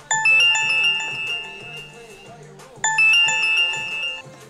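Phone ringtone: a quick run of bright chiming notes that fades out, heard twice about three seconds apart, over soft background music.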